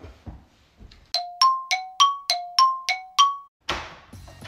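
Electronic door chime: eight quick ringing tones alternating between a lower and a higher note, like four ding-dong pairs, signalling the front door opening. A short rush of noise follows near the end.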